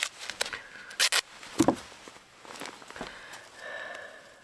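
White adhesive foot tape being pulled off its roll and torn: two sharp short rips about a second in, then soft handling and rustling as the strip is pressed onto a silicone practice foot.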